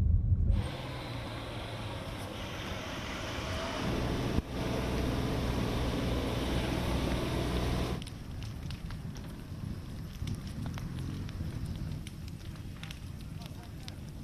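Wildfire burning: a loud, steady rushing hiss of flames, then about eight seconds in a quieter stretch of scattered crackles from smouldering, burning house timbers.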